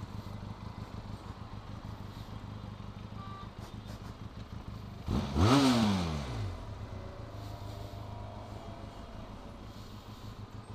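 Benelli TRK 502X parallel-twin motorcycle engine idling steadily, with one sharp throttle rev about five seconds in whose pitch falls back to idle over a second or so.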